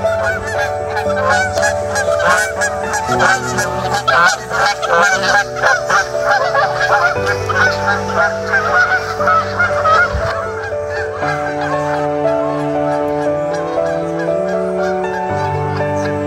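A flock of geese honking, many overlapping calls at once, dying away about two-thirds of the way through. Slow, sustained music notes play underneath throughout.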